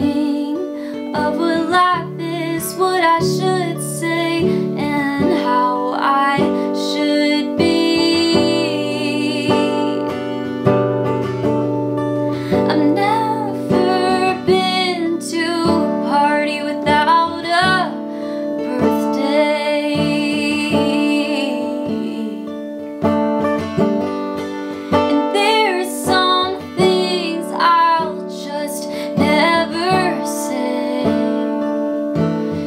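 A young woman singing, accompanying herself on a strummed acoustic guitar, her voice bending and wavering in pitch over held chords.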